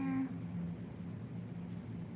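A woman's voice holding a hummed or sung note that ends about a quarter second in, following a shorter lower note just before. After it only a steady low hum remains.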